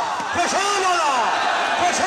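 Sharp hits of a volleyball being struck during a rally, one about half a second in and another near the end, under a commentator's drawn-out, wavering calls.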